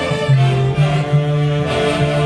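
Live Peruvian orquesta típica playing: a section of saxophones together with violins and a harp, a low bass line stepping from note to note under the melody.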